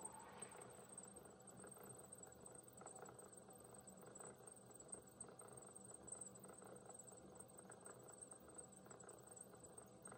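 Near silence: a potter's wheel running with a faint steady hum, and soft wet rubbing as clay-covered hands shape the rim of a thrown bowl.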